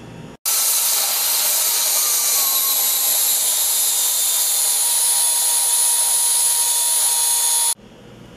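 Philips Walita food processor motor running steadily with a high whine while it chops cooked cassava into a mash. It starts about half a second in and cuts off suddenly near the end.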